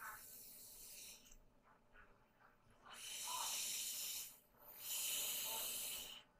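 Air hissing through a ventilator's tracheostomy breathing circuit. A faint hiss comes first, then two longer hisses of about a second and a half each, one breath after the other.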